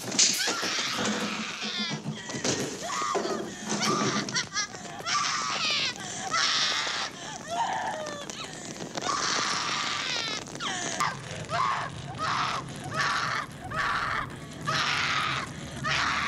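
Several people screaming and crying out in panic, in repeated high-pitched bursts over a low steady rumble.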